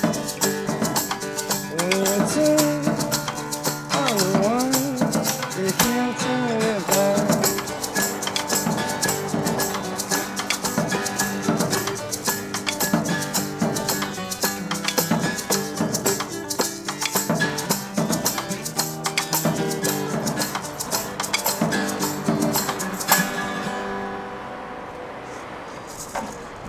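Acoustic guitar strummed hard at a fast tempo over a driving rattle of drums and shaker. A loud final hit comes a few seconds before the end, and the playing dies away after it.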